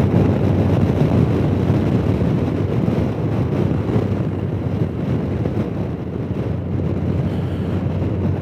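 Steady wind rush on the microphone and road noise from a Honda Gold Wing touring motorcycle cruising at highway speed, with a low, even engine drone underneath.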